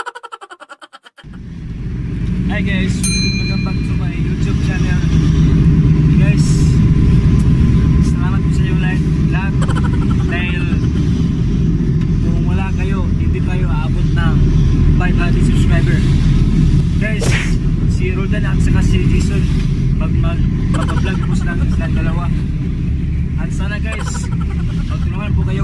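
Steady, loud engine and road rumble inside a moving passenger vehicle, with voices talking over it. It starts about a second in, after a short fading sound effect.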